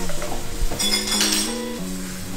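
Beaten egg sizzling in a stone-coated wok over a gas flame as the wok is tilted to spread it into a thin sheet, with a few light clinks of the pan. Background music with sustained notes plays over it.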